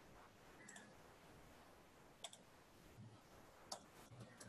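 Near silence broken by three faint, sharp clicks at a computer, about a second and a half apart; the last two are the loudest.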